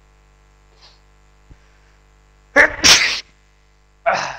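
A man sneezing once, loud and sudden, about two and a half seconds in, over a faint steady mains hum.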